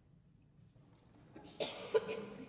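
A quiet room for about a second and a half, then a person coughs twice near the end.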